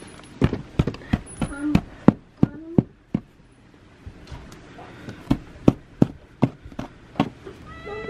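Rubber rain boots being handled, knocked and shaken to empty out snow: a run of sharp, irregular knocks and taps, roughly two a second, pausing briefly partway through.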